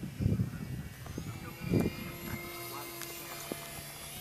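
Radio-controlled model airplane's motor whining in flight, its high pitch rising from about two seconds in. A couple of low, muffled thumps come in the first two seconds.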